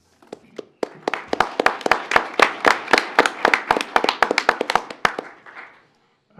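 Applause from a small audience in a meeting room, the separate hand claps distinct. It starts about a second in and dies away near the end.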